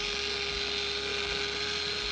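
Handheld electric surgical drill running with a steady whine over hiss, from an old film soundtrack.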